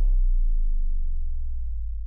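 A deep, steady bass tone held as the last note of the closing music, fading slowly.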